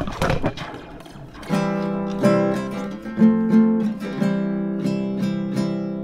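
Nylon-string acoustic guitar fitted with a slinky spring and a piezo pickup in a hole drilled in its body, strummed in sustained chords, which ring on with a springy reverb. A few light taps on the strings come first, then about seven strums starting about a second and a half in.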